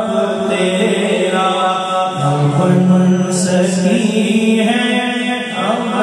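A man's voice singing a naat, Urdu devotional verse, through a microphone: long drawn-out notes that slide and waver between pitches, with no words broken out.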